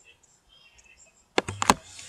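Faint room hiss, then a quick run of three sharp clicks about one and a half seconds in, just as a man's voice starts.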